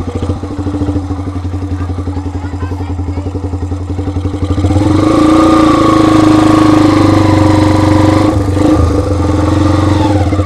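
Kawasaki Binter (KZ200) custom chopper's single-cylinder four-stroke engine running under way, with a steady beat of firing pulses. About halfway through it gets louder and holds a steadier, higher note, with a brief dip near the end.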